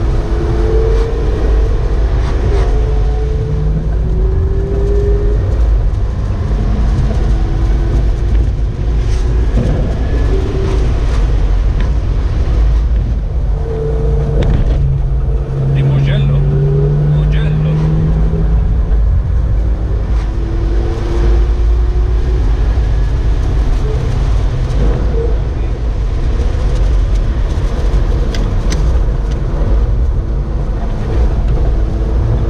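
Ferrari engine and road noise heard from inside the moving car's cabin: a steady low rumble, with the engine note swelling and rising a little around the middle.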